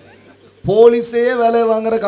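A man preaching into a microphone: after a brief pause, a loud, drawn-out and emphatic stretch of speech with long held vowels at a steady, raised pitch.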